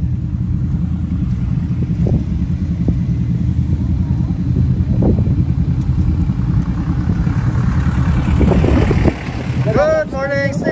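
Motorcycle engine idling with a steady low rumble that swells slightly, then drops sharply about nine seconds in.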